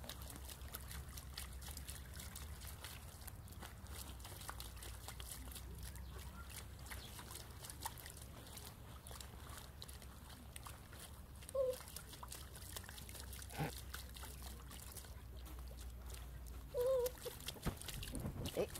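Small animal splashing and pawing in a shallow plastic tray of water: a steady run of small splashes and drips, with a few louder splashes later on.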